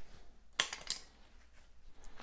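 Two brief, faint scrapes about a third of a second apart: gloved hands handling a copper pipe clamped in a pipe vise.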